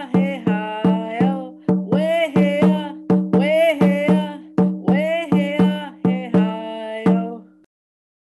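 A high voice singing a song over a hand drum struck in a steady beat of about three strokes a second, each stroke leaving a low ring. The song and drumming end about seven and a half seconds in.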